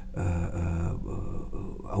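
A man's voice holding one long, low hesitation vowel, an unbroken 'eee' at nearly level pitch for almost two seconds, as he searches for his next word.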